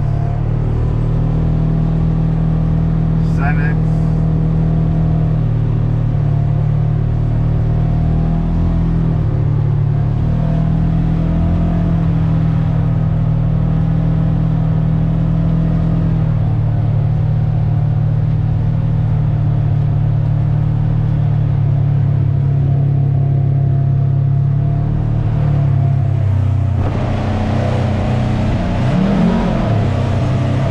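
Polaris General XP 1000 side-by-side's twin-cylinder engine running steadily under way, its pitch dipping briefly a few times. Near the end it enters a concrete tunnel, where the sound turns echoing and the engine revs up and down.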